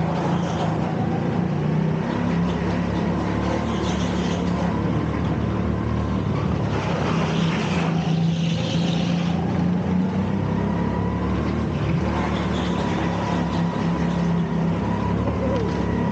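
Rental go-kart engine running at speed, heard from onboard the kart. Its note holds mostly steady, with small rises and dips, under a hiss of noise.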